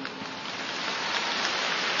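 Audience applauding, an even patter that grows a little louder over the two seconds.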